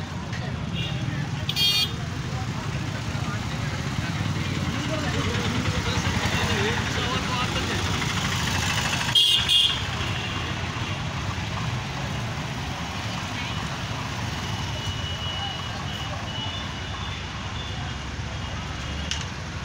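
Busy street traffic: vehicle engines running under the chatter of a crowd, with horns honking, a short honk about two seconds in and a louder double honk near the middle.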